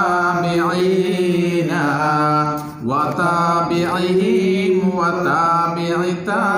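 Unaccompanied male voices chanting Arabic devotional praise of the Prophet (Mawlid salawat) in long, ornamented held notes over a steady lower sustained tone, with a brief breath pause about halfway.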